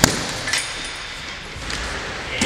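Punches landing on a heavy punching bag: a sharp hit at the start, another about half a second in, and fainter hits near the end.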